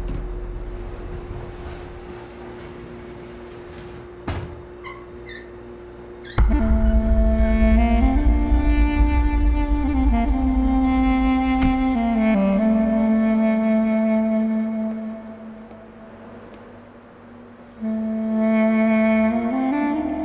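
Background film score: a quiet held drone, then from about six seconds in a loud melody of long sustained notes sliding slowly between pitches over a deep low rumble. It fades away after about fourteen seconds and comes back loudly near the end.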